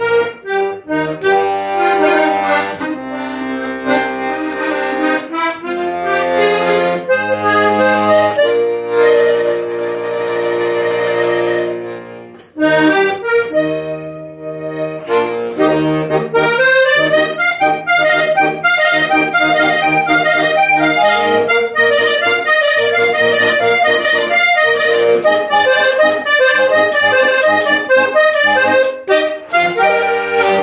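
Hohner Corona III three-row diatonic button accordion playing a vallenato introduction. It begins with long held chords over bass notes that imitate a piano part, dips briefly, then moves from about halfway on into quicker running melody lines.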